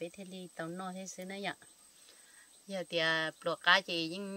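A woman talking in short phrases, with a pause of about a second in the middle.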